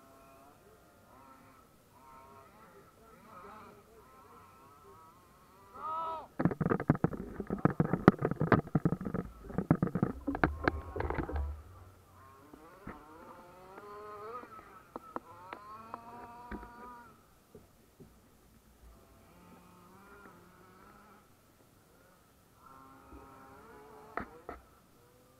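Motors of radio-controlled cars whining, their pitch rising and falling as they speed up and slow down around the track. From about six to twelve seconds a much louder stretch of rapid crackling covers them.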